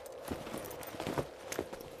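Footsteps on stone paving: a run of light, irregular steps, about two to three a second, over a faint steady tone.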